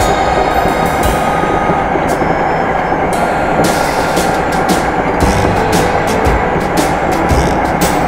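Hankyu electric train running at speed, heard from inside the front cab: a steady dense running noise with irregular sharp clicks from the wheels on the rails.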